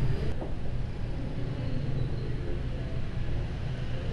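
Steady low rumble of a portable gas stove's burner heating a pot of hot-pot broth.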